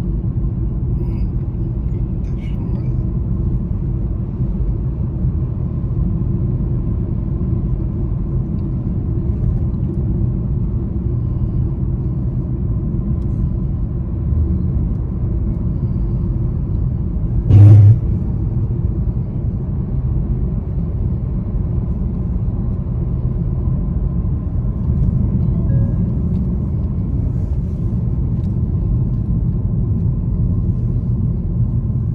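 Car cabin noise while driving: a steady low rumble of engine and tyres on the road. A single short, loud thump comes a little past halfway through.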